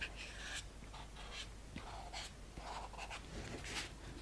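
Faint rubbing and scraping strokes of the end of a small plastic rolling pin pressed firmly along the edges of sugar-paste petals on a foam pad, thinning them, in a quick uneven series.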